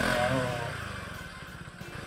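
Honda ADV160 scooter's single-cylinder engine running steadily through a Yamamoto Racing SUS TYPE-SA stainless exhaust, played back from a recording. It is not especially loud, as befits a JMCA-certified silencer.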